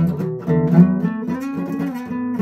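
Acoustic guitar strummed in a steady rhythm, its chords ringing between strokes.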